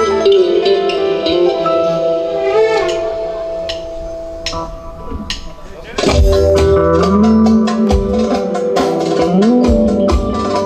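Live band playing an instrumental passage: a Korg Kronos keyboard lead with bending, sliding notes over held chords. It thins out for a few seconds, then the full band with bass and drums comes back in about six seconds in.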